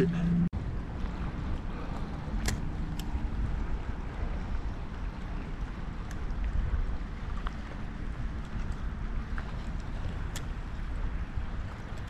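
Wind rumbling on the microphone over choppy river water lapping at the shore, with a few faint clicks.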